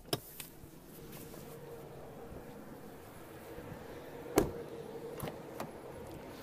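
A steady low hum, then a sharp click about four seconds in and a lighter one about a second later, from a car's rear door being unlatched and opened.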